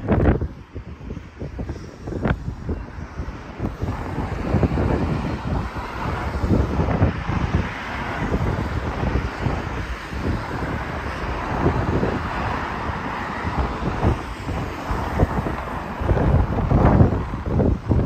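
Cars driving past on a road, tyre and engine noise rising and falling, with wind buffeting the microphone. The traffic swells louder near the end.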